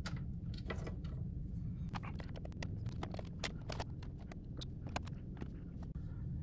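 Small clicks and taps of plastic and metal as the Xbox Series X's disc drive connectors are popped off and the drive is lifted out of the console, over a steady low hum. A sharp click comes at the start, and a quick run of light clicks and knocks follows from about two seconds in.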